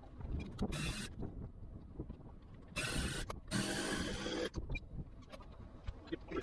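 Small model aircraft engine being turned over by hand at the propeller: scattered clicks, then two short rough hissing bursts around the middle, each under a second long.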